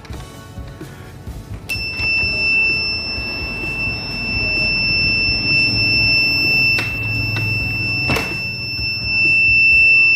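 Homemade clothespin door alarm's small battery-powered buzzer sounding a continuous high-pitched beep, set off as the door is opened. It starts about two seconds in and holds steady. Two brief knocks come near the end, with background music underneath.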